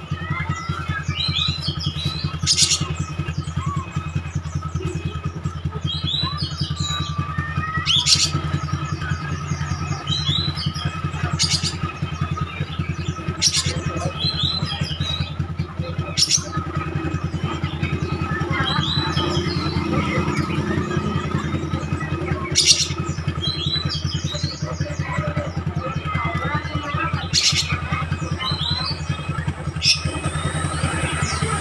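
Oriental magpie-robin (kacer) singing short, squiggly, high phrases every couple of seconds, with about seven sharp, loud notes spread through, over a steady low hum.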